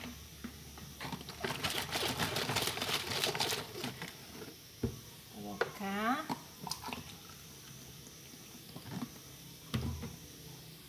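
Water splashing and sloshing in a laundry tank for about two seconds as a soapy dress is rinsed by hand, followed by a sharp click and a brief voice.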